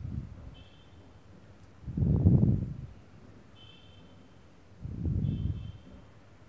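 Three low, muffled puffs of noise on the microphone, the loudest about two seconds in, like air or wind buffeting it. Between them a bird outside gives three short, thin high chirps.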